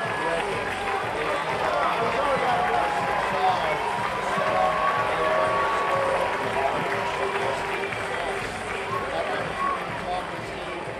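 Ballpark crowd chatter: many voices talking at once in the stands, steady throughout.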